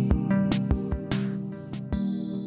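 Instrumental background music: sustained pitched notes over a steady beat.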